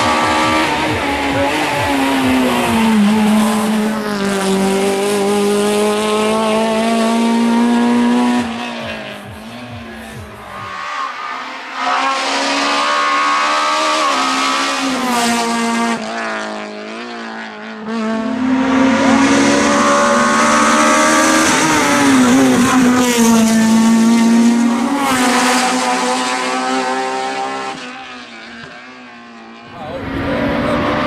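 Honda Civic race car's four-cylinder engine revving hard, its pitch climbing and dropping again and again through gear changes and braking for hairpins, with tyres squealing. The sound dips twice as the car passes out of range and fades away near the end.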